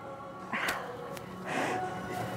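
Two short, breathy exhalations about a second apart from a woman straining through abdominal crunches, over faint background music.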